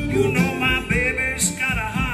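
Acoustic lap slide guitar played live: a sliding, wavering melody over a steady plucked bass pattern.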